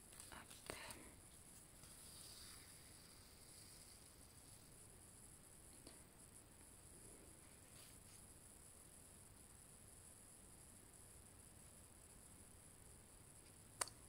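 Near silence: faint rustles and small clicks of embroidery thread and needle worked through cross-stitch fabric in the first second, and a single soft click just before the end.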